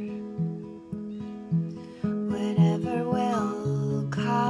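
Acoustic guitar with a capo, its chords picked in an even pattern of about two strokes a second, the notes ringing on. A woman's voice sings a gliding phrase in the second half.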